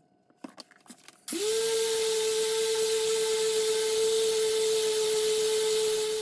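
A dual-action polisher starting about a second in after a few handling clicks. It quickly spins up to a steady whine with a hiss as it buffs finishing polish on an aluminum plate.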